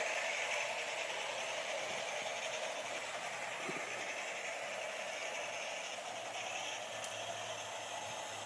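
00 gauge model train running along garden track: a steady whirring rumble of motor and wheels that slowly grows a little fainter.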